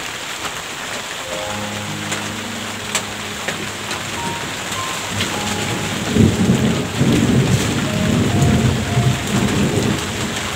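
Steady rain hiss with scattered drip ticks, joined about six seconds in by a louder, low rolling rumble of thunder. Soft sustained musical tones sound under it.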